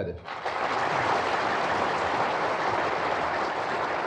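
Audience applauding: dense, steady clapping that starts just after the beginning and carries on without a break.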